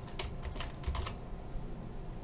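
Computer keyboard typing: a quick run of about five keystrokes in the first second, entering a short word such as a column name.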